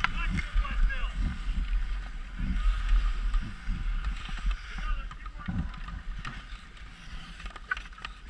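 Hockey skates striding and scraping over outdoor rink ice, in uneven swishes, over a low rumble of wind on the microphone.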